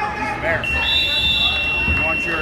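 Gym scoreboard buzzer sounding one long steady tone, starting about half a second in, over shouting from the crowd; it marks the end of a wrestling period.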